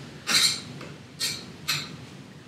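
A metal spoon stirring diced vegetables and scraping a stainless steel skillet: three short scraping strokes, the first the loudest.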